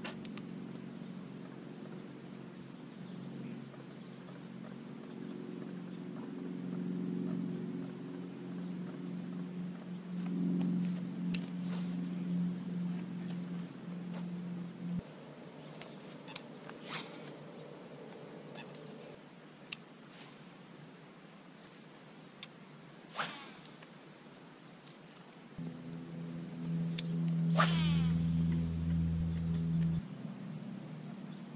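Spinning reel being cranked with a steady whir, broken by a few quick swishes of the rod and line as the lure is cast, each a short sharp sweep.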